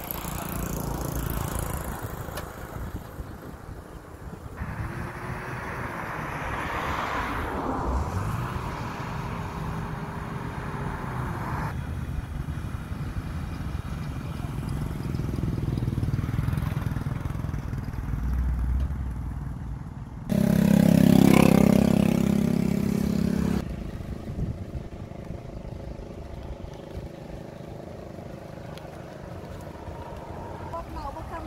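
A vehicle engine running in the open with wind on the microphone, in several short spliced clips that change abruptly; it is loudest for about three seconds from about twenty seconds in.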